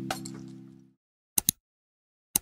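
Background music fading out, then two short, sharp double clicks about a second apart: an editing sound effect for title letters popping in.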